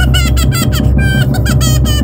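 Several cartoon characters crying in high, squeaky voices, a run of short wavering sobs and wails, over background music with a steady low beat.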